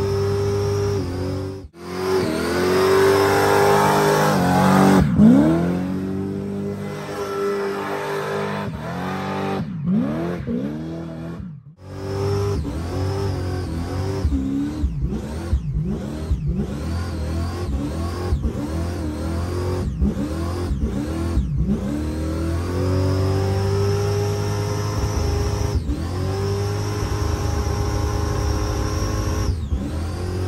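Car engine revved hard again and again during a burnout, heard from inside the cabin, its pitch rising and falling with each rev. The sound drops out briefly twice, about two seconds in and near twelve seconds.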